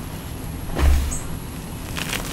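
Gloved hands crushing and pressing soft gym chalk powder in a bowl, with one dull thump about a second in, over a low steady rumble.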